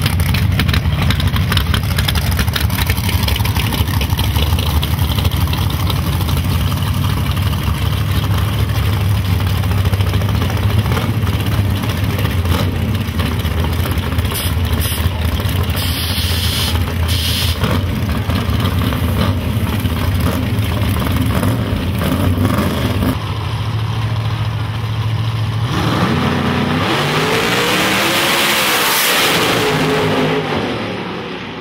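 Drag cars' V8 engines idling loudly with a steady low rumble, shifting at about 23 seconds. In the last four seconds the engines rev up and the cars launch at full throttle, engine pitch climbing and then falling as they pull away down the strip.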